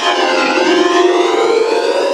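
Logo sound run through heavy pitch and distortion audio effects: a loud, dense stack of tones that dips in pitch over the first half-second and then slowly rises again, siren-like.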